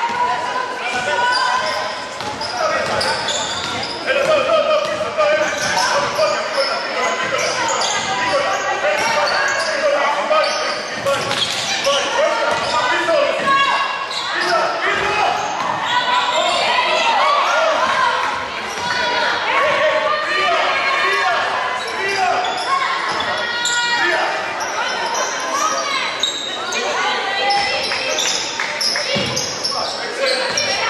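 Basketball bouncing on a hardwood gym court, with several voices calling out across the hall.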